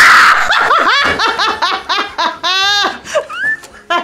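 A startled scream at the very start, breaking into hearty laughter from the prank pair: quick repeated bursts of laughing, with one long high shriek of a laugh near the end.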